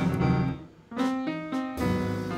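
Live jazz led by a grand piano playing chords. The sound drops away for a moment near the middle, then the piano comes back in with freshly struck chords.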